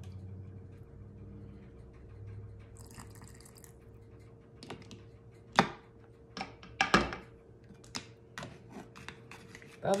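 Meat stew being ladled into a glass pint canning jar through a plastic funnel: liquid sloshing, then a run of sharp knocks and clinks of the ladle against the funnel and jar, the two loudest about halfway through.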